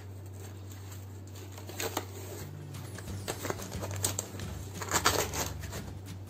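Crinkling and rustling of a small plastic chili-sauce sachet being handled and torn at, with a few light clicks and rustles scattered through, over a faint steady hum.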